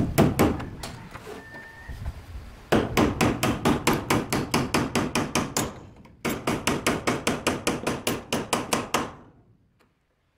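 Hammer nailing a small metal hinge onto a wooden plank shutter: a few blows, then two fast runs of light taps, about six a second, each about three seconds long with a short break between, stopping about nine seconds in.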